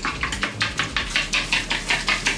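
Fork beating eggs in a ceramic bowl: quick, even clinks of metal tines against the bowl, about six or seven a second.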